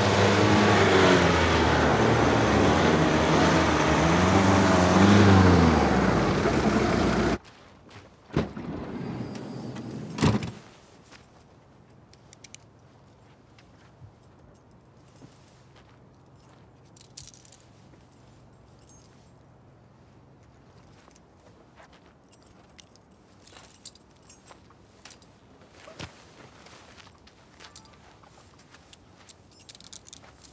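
Volkswagen van engine running as it drives up, its pitch rising and falling, cut off abruptly about seven seconds in. After that it is quiet, with a thump about three seconds later and light clicks and rustles.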